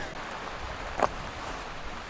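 Steady rustling and brushing noise from walking through dry grass and scrub, with a single sharp click about a second in.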